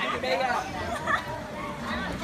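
Several people's voices chattering and calling out over one another, with no clear words.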